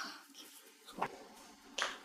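Footsteps: heels clicking on a hard floor, two sharp steps about a second in and near the end, over faint room tone.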